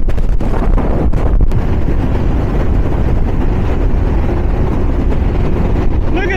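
Steady rush of wind buffeting the microphone over the drone of a speedboat's engines and hull running fast across the water.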